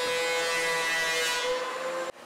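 Shop vacuum motor running with a steady whine and a rush of air, cutting off suddenly near the end.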